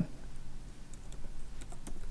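Typing on a computer keyboard: a few quiet, irregularly spaced keystrokes.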